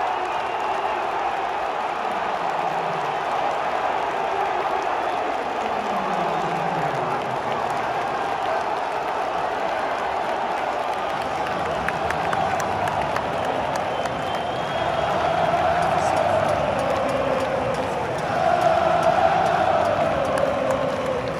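Large football stadium crowd cheering and shouting after a home goal, the massed roar swelling louder in the last few seconds as the singing picks up.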